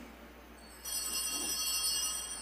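A small cluster of altar bells rung, a bright ringing of several high clear tones starting just under a second in and sustaining.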